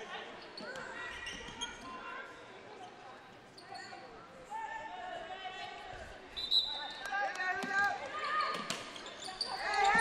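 Scattered voices of players and spectators echoing in a large indoor basketball hall during a break in play, with a basketball bouncing on the hardwood court now and then. The sound grows louder in the last few seconds as play restarts.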